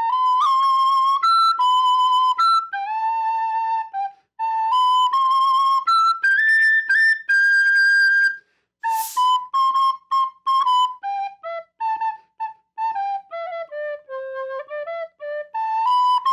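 Solo plastic soprano recorder playing a melody in clear separate notes, with a quick breath taken about nine seconds in. After the breath comes a run of shorter notes stepping down to a low note, then a long held note near the end.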